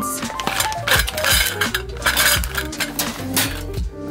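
Metal candle-tin lids in a plastic bag clinking and rattling in a wire mesh drawer as it is handled, with a clatter about a second in that lasts a second or so.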